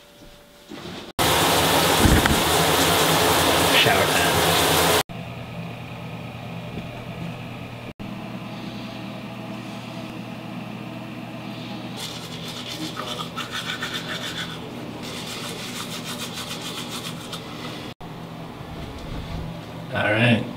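A manual toothbrush scrubbing teeth in quick back-and-forth strokes, in two stretches of a few seconds each near the end. Earlier, from about one to five seconds in, a loud steady rushing noise cuts in and out abruptly.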